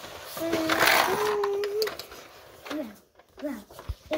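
A child's voice making a drawn-out, hissy play noise at a held pitch that steps up partway through, then two short falling vocal sounds.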